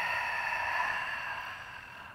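A woman's long, breathy exhale through the mouth, fading out near the end: the Pilates exhale that draws the belly in and up.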